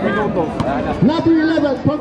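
Speech: men's voices talking, one of them calling the game.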